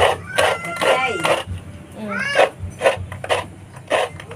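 Coconut meat being scraped on a traditional serrated coconut grater, in rhythmic strokes about two a second, most evenly in the second half.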